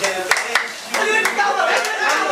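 Several hand claps from a small group of men, uneven in time, over a man's lively voice.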